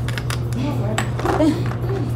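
Light clinks and taps of utensils and dishes on a stainless steel kitchen counter, scattered through the moment over a steady low hum, with quiet voices in the background.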